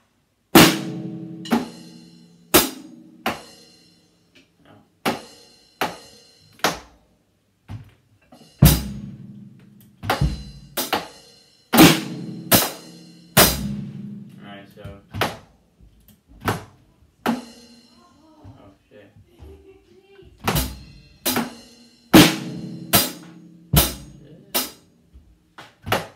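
Drum kit played slowly and unevenly by a beginner working out a simple beat: single hi-hat, snare and bass-drum strokes with hesitating gaps, some strokes together, no steady groove.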